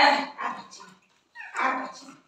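A baby's short, high-pitched squeal at the start, then a second, lower vocal sound about a second and a half in.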